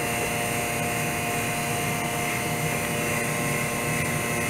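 Vacuum pump running steadily with a constant hum, drawing vacuum on the PVA bag of a resin lamination.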